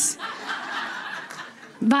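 Soft laughter lasting about a second and a half, quieter than the speech around it.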